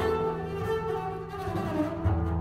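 Double bass played with the bow, holding sustained notes high on its strings, easing off slightly about one and a half seconds in before the next note.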